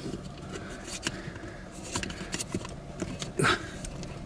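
Scattered plastic clicks and creaks as a suction-cup phone mount is tugged at on a car windshield, its sticky pad holding fast.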